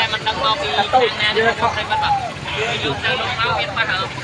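Several people talking over one another, with a steady low rumble of road traffic underneath.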